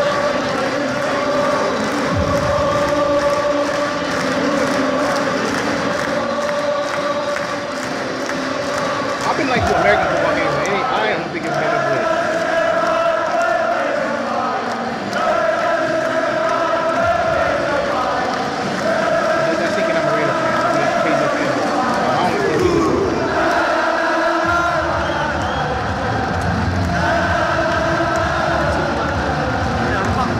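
Stadium crowd of Northern Ireland football fans singing a chant together in long, held notes, phrase after phrase.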